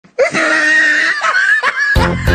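A man's high-pitched laughter, a long squealing laugh broken by a few short catches, cut off abruptly at the end.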